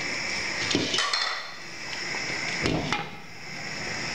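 Glass lid being set on a metal cooking pot: a couple of light clinks about a second in, then a heavier knock just under three seconds in as it settles, over a steady hiss.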